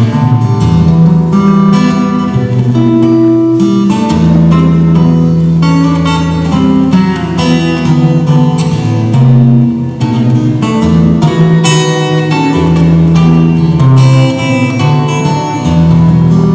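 Solo acoustic guitar played live: a continuous instrumental passage of picked melody notes over ringing bass notes, with no singing.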